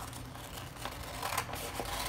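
Scissors cutting through pattern paper: irregular snips with the paper rustling, and a couple of sharper snips late on.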